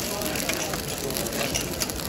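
Mutton sizzling in a hot karahi over a wood fire, with scattered clicks and scrapes of a metal spatula stirring against the pan.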